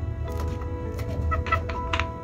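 Kitchen knife chopping red chili on a wooden cutting board: a few sharp taps, a pair about half a second in and a quicker cluster near the end, over steady background music.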